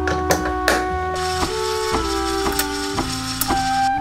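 Background music with held, stepping notes. Over it, two sharp clicks in the first second, then an electric milk frother whirring steadily as it froths oat milk, stopping just before the end.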